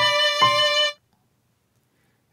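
Sampled piano and violin played together by a Tone.js browser app, a short riff with the violin holding a note. One more note is struck about half a second in, and the music cuts off just under a second in.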